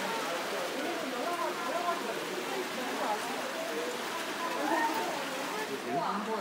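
Steady rush of running water from an artificial waterfall in an aquarium exhibit, with the voices of other people chattering underneath.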